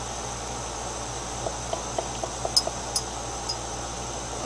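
A glass stirring rod clinking lightly against the inside of a glass beaker as acid is stirred, with several small scattered ticks from about a second and a half in, over a steady background hum.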